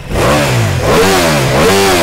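Ducati Multistrada V4 S's 1,158 cc V4 engine revved in neutral, three quick throttle blips with the pitch rising and falling on each. Heard from beside the stock exhaust silencer.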